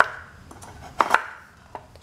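Knife chopping a block of palm sugar on a wooden cutting board: two sharp cuts in quick succession about a second in, then a lighter knock near the end.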